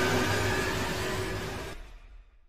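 Outro animation sound effect: a steady rushing noise with a faint hum underneath, fading away near the end.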